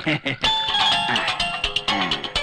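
Mobile phone ringtone playing a tune of clear held notes, starting about half a second in, over voices.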